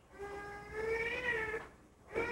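A single drawn-out, high-pitched vocal cry lasting about a second and a half, its pitch rising slightly and then falling away.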